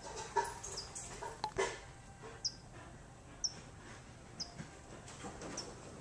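A bird chirping over and over, one short high chirp about once a second, with a few faint knocks in between.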